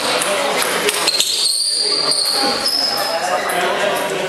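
A few sharp clicks of a table tennis ball on bat and table, in a large echoing hall full of chatter, with a drawn-out high squeak about a second in.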